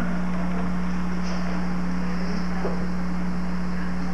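A steady low hum with constant hiss, unchanging throughout, and only faint indistinct sounds from the room over it.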